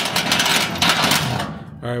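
Sheet-metal panel of a steel filing cabinet sliding along its rail into place, a rapid metallic rattle and scrape that stops about a second and a half in.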